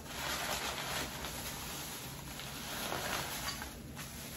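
Plastic bags rustling and crinkling steadily as decorations wrapped in them are handled and unpacked.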